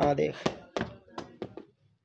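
A football thudding on a stone-tiled floor and against a foot: about five thuds, roughly every third to half second, the loudest at the start.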